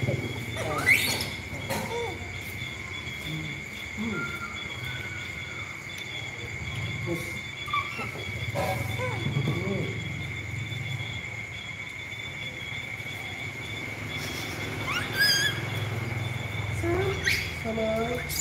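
Steady high-pitched insect chirring over a low hum, with a few brief rising squeals, the loudest about a second in and others near the end, and scattered faint voices in between.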